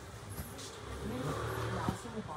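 A motor vehicle's engine running, with a steady low hum from about a second in and a sharp click just before the end.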